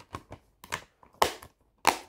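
Plastic Blu-ray case being handled: a string of short clicks and knocks, the loudest about a second in and another near the end.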